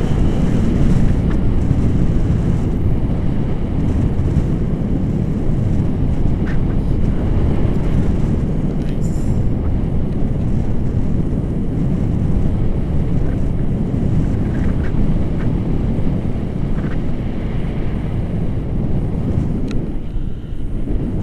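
Wind rushing over the camera microphone of a paraglider in flight, a loud, steady low rush of airflow.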